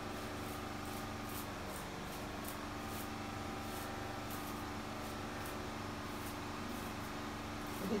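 A hairbrush drawn through a curly wig's hair in repeated strokes, each a faint, short, high swish, over a steady low hum.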